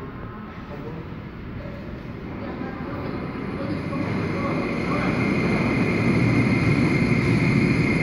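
Incheon Airport maglev train approaching and gliding past on the next track: a steady electric hum and a high whine with no wheel-on-rail clatter. It grows louder over several seconds and stays loud near the end.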